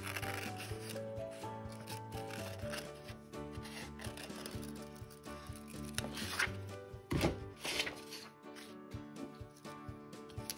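Scissors snipping through construction paper and the paper rustling as it is handled, with the loudest snips and rustles about seven seconds in. Soft background music plays under it.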